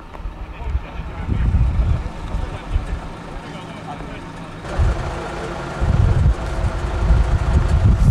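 Wind buffeting the microphone in low, gusty rumbles. From about halfway, a steady engine hum and people talking come in.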